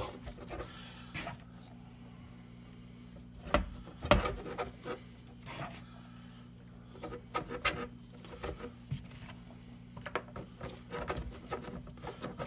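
Hands working dressing into a boiled moose heart, the moist meat and crumbs rubbing and squishing under the fingers in short irregular bursts, with two sharper knocks about three and a half and four seconds in. A steady low hum runs beneath.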